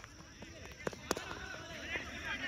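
Faint voices of players calling out across an open cricket ground, with two sharp taps about a quarter second apart a little under a second in.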